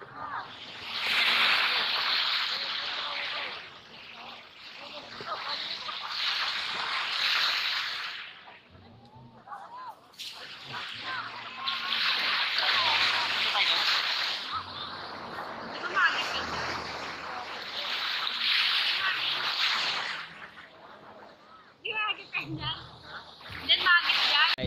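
Small waves washing onto a sand beach. The surf swells and fades in long surges, about one every five seconds.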